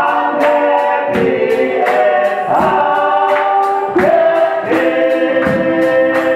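A gospel worship group singing together in harmony, holding long notes that change about once a second, over a steady percussive beat.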